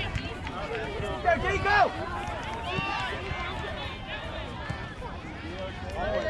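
Several voices calling and shouting over one another across an open soccer field, from young players and sideline spectators, with no single voice standing out.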